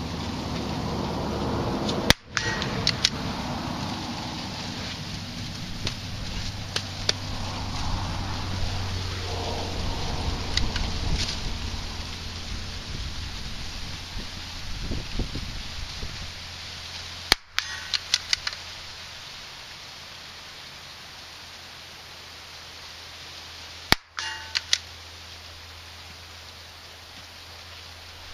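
.22 LR rifle fired three times, about two seconds in, around seventeen seconds and around twenty-four seconds, each a sharp crack followed by a few light clicks. Wind and rustling corn run underneath.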